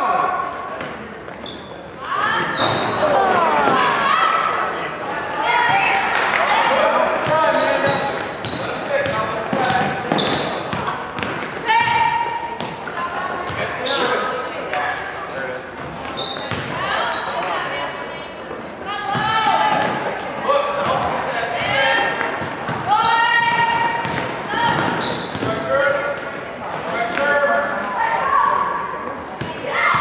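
Basketball game in a gymnasium: a ball bouncing on the hardwood court amid repeated knocks, and voices of players and spectators calling out, echoing in the hall.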